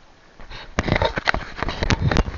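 Irregular splashes and knocks at the water's surface as a gillnet is hauled in beside a small fishing boat, starting about half a second in.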